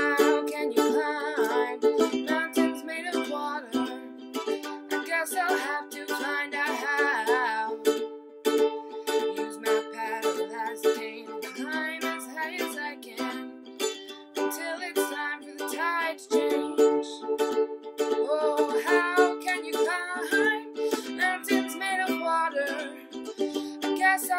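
Soprano ukulele strummed in a steady rhythm, the chords changing every two to three seconds, in an instrumental passage of an acoustic folk song.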